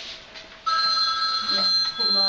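A steady electronic ringing tone of several pitches starts suddenly about two-thirds of a second in and holds without a break. Voices talk over it near the end.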